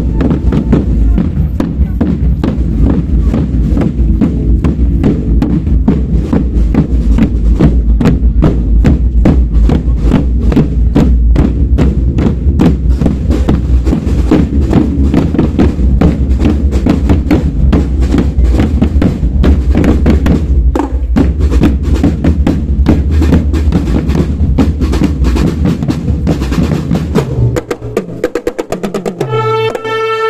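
Marching band drum line playing a fast, dense cadence on marching bass drums and snare drums while parading. Near the end the drumming stops and a sustained pitched melody comes in.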